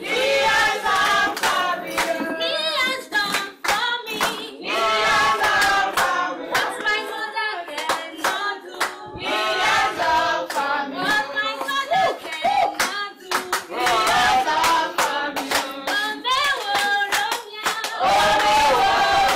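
A church congregation singing a praise song together, with hand clapping to the beat.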